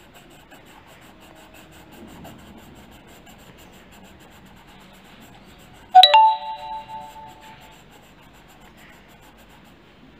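A doorbell-like chime rings once about six seconds in: two quick notes of several steady tones that ring out and fade over about a second and a half. Under it, a coloured pencil scratches faintly as it shades on paper.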